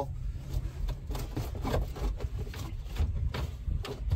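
Scattered light knocks, clicks and rubbing from hands and a tool working screws and a trim panel loose inside a boat's storage compartment, over a steady low rumble.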